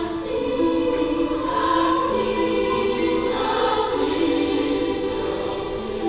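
Youth choir singing a slow passage of a choral piece, holding long sustained notes.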